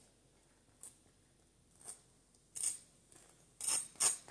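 Butter knife spreading butter on a toasted bagel: about four short, scratchy scraping strokes, the later ones louder.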